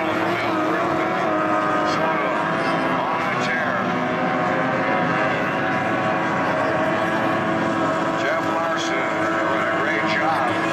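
Outboard engines of several SST 60 tunnel-hull racing boats running flat out, a steady high-pitched whine of several tones at once, with pitch swoops as boats pass about three and a half seconds in and again near the end.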